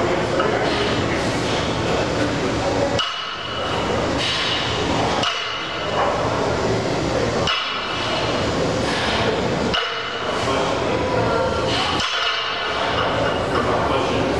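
A 225 lb barbell being deadlifted for repeated reps, its plates giving a short metallic clink each time the bar comes down, about every two seconds. A steady, loud background din runs underneath.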